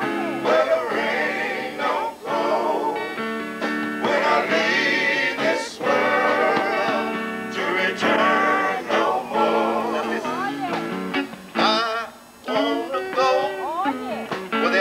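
A man singing into a hand-held microphone over guitar-led backing music, his held notes wavering.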